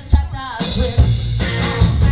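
Live garage-rock band playing electric guitar, bass guitar and drum kit. The music dips briefly at the start, then the full band comes back in about half a second in.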